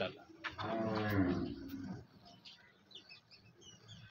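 A cow mooing once: a single low call of about a second and a half, starting about half a second in.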